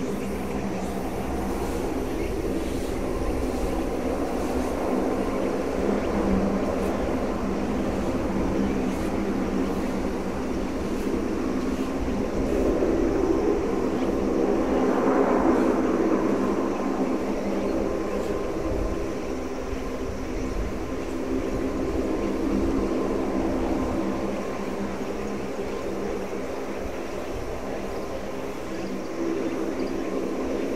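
Lockheed C-130J Super Hercules' four Rolls-Royce AE 2100 turboprops with six-blade propellers, a steady propeller drone as the aircraft flies away after takeoff. The drone swells to its loudest about halfway through, then eases slightly.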